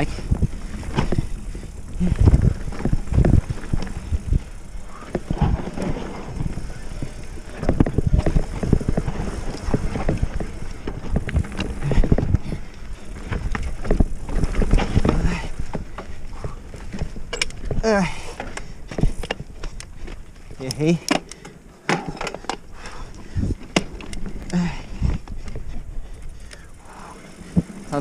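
Oggi Cattura Pro mountain bike rattling and knocking over a rough dirt singletrack, heard from a camera mounted on the bike, with steady rumble underneath.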